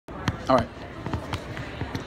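A man says "all right", amid a handful of sharp knocks or taps scattered through the two seconds.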